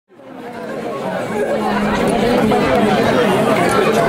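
Crowd of many people talking over one another, fading in from silence over the first second or so.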